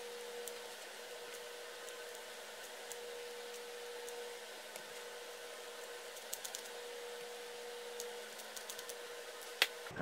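Quiet room tone with a steady faint hum and scattered light clicks and taps as a hot glue gun is worked around the seam of a plastic resin mold. A sharper knock comes near the end, as the glue gun is set down on the plywood bench.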